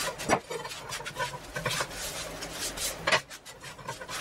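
A rag scrubbing over a wet steel cleaver blade on a wooden tabletop in quick rubbing strokes, wiping off loosened rust residue after a rust-removal bath. Two sharper knocks stand out, about a third of a second in and again near three seconds.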